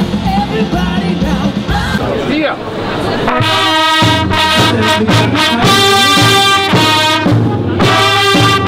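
A rock band with a singer plays for about three seconds, then cuts suddenly to a brass band playing loud held chords in short phrases.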